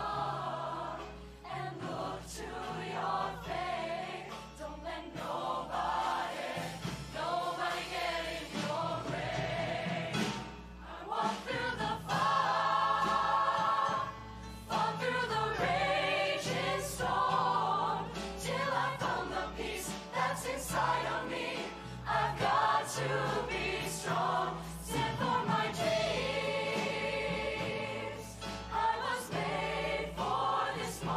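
A large show choir singing in parts, backed by a live band whose low notes run underneath the voices.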